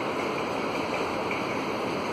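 Steady, even rushing background noise with no clear events in it.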